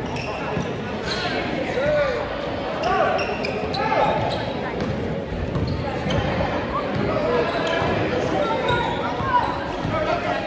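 Basketball being dribbled on a hardwood gym floor, with sneakers squeaking, during live play. Crowd and player voices echo through the gym around it.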